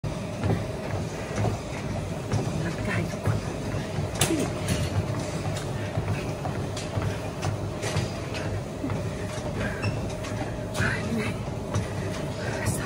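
A woman talking over a steady low mechanical rumble, with scattered knocks and clicks throughout.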